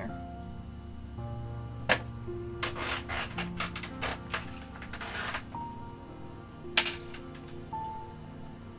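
Soft background music with steady held notes. Over it come table-top handling noises as fabric is picked up: a sharp click about two seconds in, rustling and rubbing through the middle, and another click near seven seconds.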